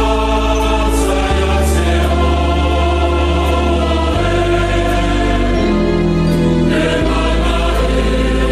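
A hymn sung by a choir over sustained chords, the bass note shifting every second or two.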